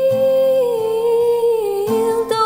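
A woman's singing voice holding one long, wordless note in a slow acoustic song, the pitch stepping down slightly twice.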